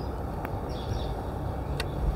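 Outdoor background: a steady low rumble with birds chirping, and two faint clicks, one about half a second in and one near the end.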